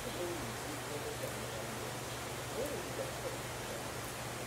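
Steady outdoor background noise with a low hum, and a few faint, short distant calls.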